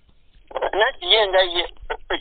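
A person speaking over a telephone line: a thin voice with no highs, starting after a short pause about half a second in.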